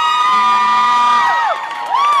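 Audience cheering and whooping, with several long, high 'whoo' calls overlapping and held for over a second. They trail off about halfway through, and a new whoop rises near the end.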